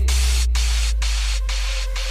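DJ remix breakdown: a steady deep sub-bass note held under a white-noise wash that is chopped by short gaps about twice a second, with no drum beat.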